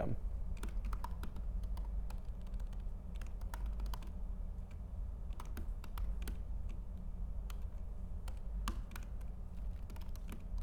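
Typing on a MacBook laptop keyboard: a run of irregular, soft key clicks over a low steady hum.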